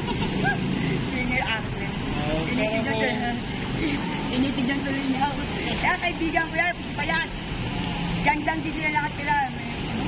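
A woman talking, with steady road traffic rumbling underneath.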